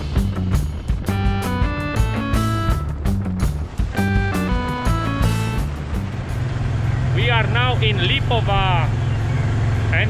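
Guitar-driven rock music for about the first six seconds, then the steady drone of a Honda Transalp 650's V-twin engine as the motorcycle rides along, with a voice over it near the end.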